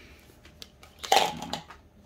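Plastic children's utensils clicking together and clattering into a plastic cup, with a few light clicks followed by a short clatter about a second in.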